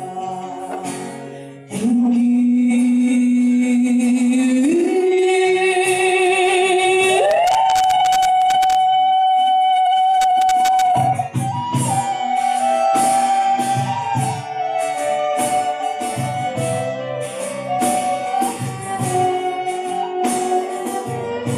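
Live acoustic band music with a female voice singing. The voice holds three long notes, each a step higher, the last high note the loudest. About eleven seconds in it gives way to a busier passage of rhythmic strumming with violin and guitar.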